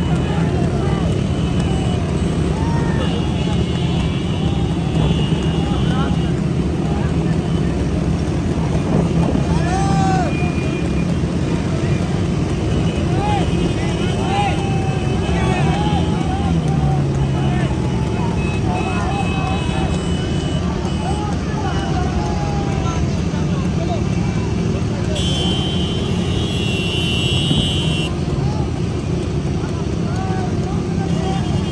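A pack of motorcycles running together close by, a dense, steady engine rumble, with people shouting over it. Horns sound twice, for a few seconds about three seconds in and again near the end.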